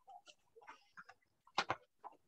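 Faint scattered clicks and taps of desk or computer handling, with a louder pair of knocks about a second and a half in.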